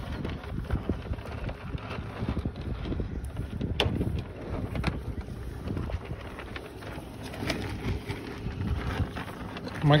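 Wind rumbling on the microphone over longhorn cattle eating feed from a trough, with scattered short clicks and knocks as they feed and jostle.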